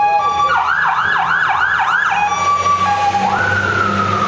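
Hook-and-ladder fire truck's siren passing close. Steady high tones give way to a fast yelp of about three sweeps a second, then a quick rise into a long, slowly falling wail, over the truck's engine rumble.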